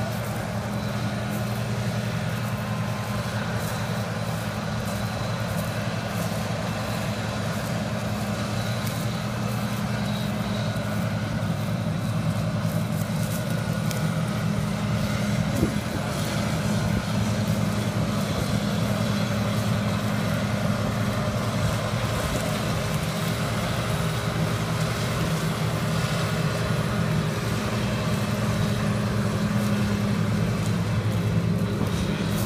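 John Deere combine harvester running during soybean harvest: a steady diesel engine drone with a deep hum, growing slightly louder as it comes nearer.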